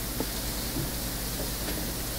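Room tone through a microphone: a steady hiss with a faint low hum.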